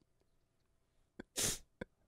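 Near silence, then a short sharp breath close to the microphone about a second and a half in, with small mouth clicks just before and after it.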